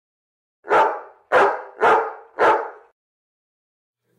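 A dog barking four times in quick succession, the barks about two-thirds of a second apart, the first coming just under a second in.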